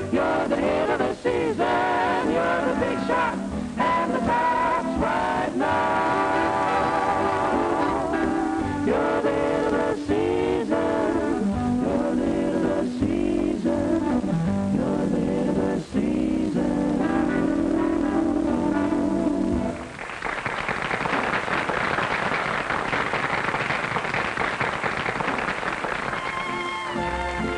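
A song, singing with instrumental accompaniment, that ends about twenty seconds in, followed by steady applause.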